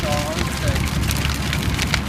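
A burning building's wooden structure crackling and popping over a steady low rumble of flames.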